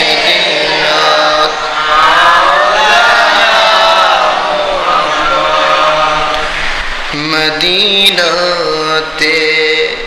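A man's voice in melodic Islamic religious chanting, holding long drawn-out notes that bend in pitch, with a new phrase beginning about seven seconds in.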